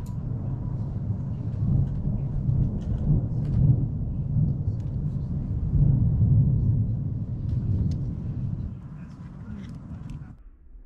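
Deep rumble of thunder during a thunderstorm, swelling twice and easing near the end, with faint light ticks over it.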